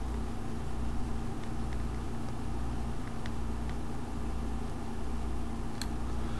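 Steady low hum and hiss of background noise on an open microphone, with a few faint clicks scattered through.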